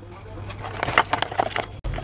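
Metal spoon stirring plaster of Paris paste in a plastic jug: irregular scraping and clicking against the jug's sides and bottom.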